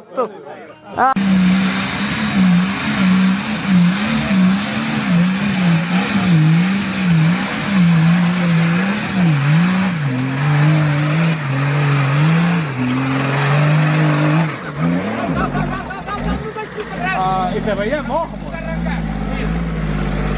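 Nissan Patrol 4x4's engine revving hard under load, its pitch rising and falling about once a second as the driver works the throttle, with tyres spinning in the dirt. After about fifteen seconds it drops to a lower, steadier run.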